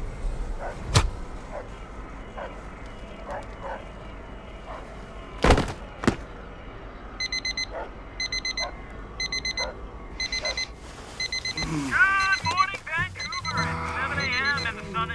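Alarm clock beeping in quick groups of four short, high beeps, starting about halfway through and repeating steadily. Earlier, a few sharp hits sound over low music.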